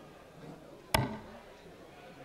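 A single steel-tip dart striking the dartboard, a sharp thud about a second in, over a faint murmur of the audience.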